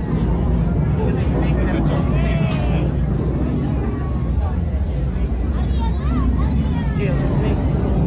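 Busy restaurant hubbub: many people talking and high children's voices breaking through here and there, over a loud, steady low rumble.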